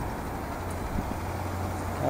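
Steady street traffic noise with a low, even hum underneath.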